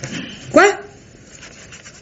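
A single short exclamation, 'Quoi?', spoken once in surprise with a sharply rising pitch.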